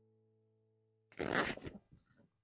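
Background acoustic guitar music, its last chord fading away, then a brief loud rush of noise about a second in that cuts off abruptly.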